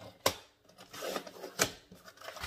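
Sliding paper trimmer cutting a sheet of cardstock: a click as the cutting head engages, a scraping slide as the blade runs through the paper, and another sharp click near the end.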